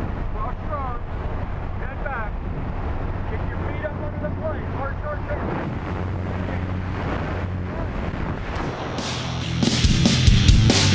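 Small jump plane's engine droning steadily through the open door, with faint shouts. About nine seconds in, a loud rush of wind takes over as the tandem pair leaves the aircraft into freefall.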